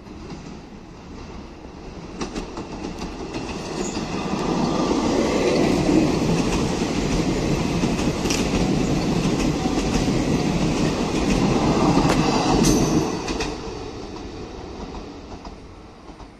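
Double-deck Région Normandie TER electric train passing close by: the rumble of wheels on rail builds over a few seconds, holds loud with clickety-clack and a few sharp clicks from the wheels, then fades over the last few seconds as the end of the train goes by.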